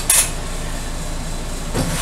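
Steady low machine hum, with a short scrape at the start and a metal drawer under the lathe rumbling shut near the end.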